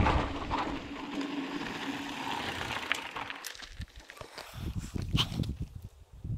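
Mountain bike rolling down a gravel trail, its tyres crunching and the frame rattling over stones, with a steady hum as it coasts. About three and a half seconds in this gives way to quieter, irregular footsteps on a dirt track.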